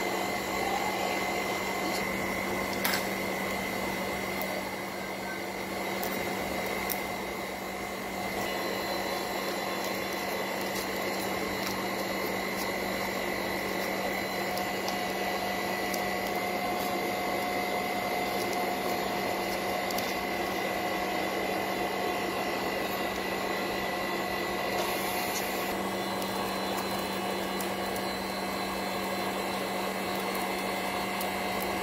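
Steady machine hum at an unchanging pitch, with a few faint clicks as the cracked, frozen cover glass of a Samsung Galaxy S7 edge is pried away from its screen.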